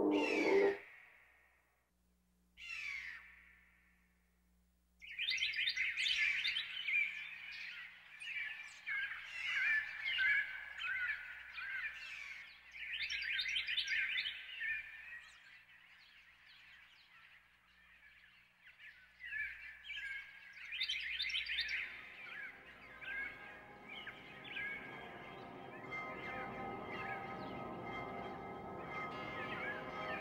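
Electronic tape music made of a dense chatter of recorded bird chirps in quick rising and falling glides over a faint low hum. About two-thirds of the way through it gives way to a sustained layered chord of steady held tones.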